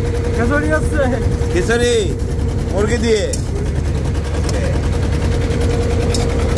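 Trawler's engine running steadily under way: a constant low drone with a steady hum over it, with a few short bits of voice.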